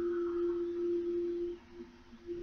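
A single steady pure tone, fairly low and unwavering in pitch, from the meditation track's background. It fades out about three-quarters of the way through, and a few faint short returns of it come near the end.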